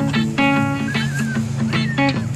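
Background music of plucked guitar notes in a steady run of short, separate notes.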